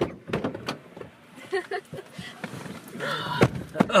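Car door shutting with a thud, among several sharp clicks and knocks as people get into the car, and a gasp near the end.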